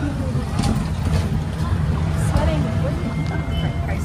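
Motorized tricycle heard from inside its open passenger cab while riding: a steady low motor rumble mixed with road noise.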